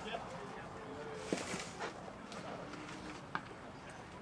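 Faint, distant voices of people chatting around a ball field, with a couple of light clicks.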